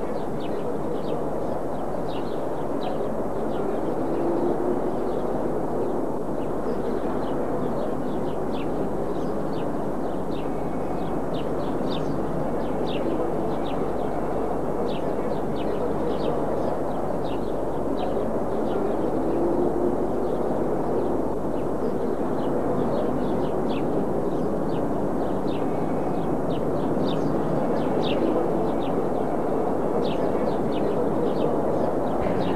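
Small birds chirping in many short, irregular calls over a steady rushing background noise.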